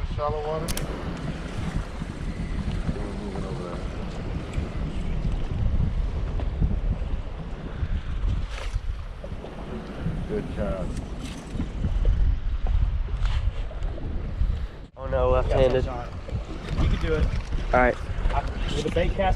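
Wind buffeting the microphone in a steady low rumble, with choppy water lapping against a small boat's hull.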